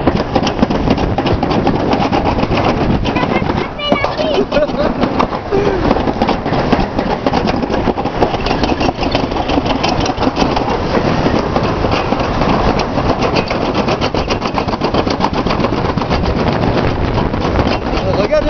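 Summer toboggan sled running fast down a stainless-steel trough track: a continuous loud, dense rattling and rumbling of the sled against the metal channel.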